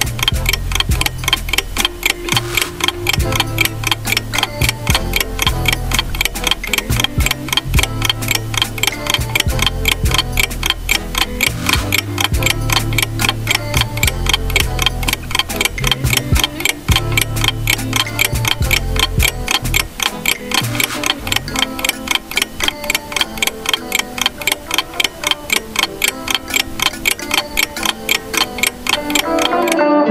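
Clock ticking sound effect of a quiz countdown timer, fast and even, over background music; the music's bass drops out about two-thirds of the way through.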